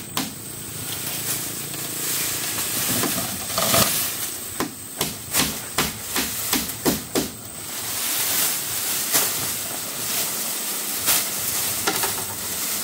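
Irregular sharp knocks and taps on a wooden hut roof frame as it is being thatched. About a dozen come close together between about three and seven seconds in, and a few more follow later, over a steady hiss.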